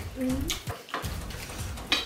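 People eating noodles at a table: a short hummed 'mmm' near the start, then a few sharp clicks of chopsticks against plates.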